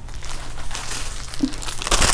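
Plastic packaging of counted cross-stitch kits crinkling as the kits are handled and swapped, the crackle growing louder near the end.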